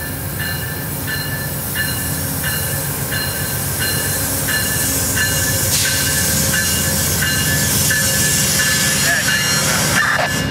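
Amtrak P42DC Genesis diesel locomotive approaching slowly, its bell ringing steadily at about one and a half strokes a second over the low rumble of the engine, growing louder as it nears.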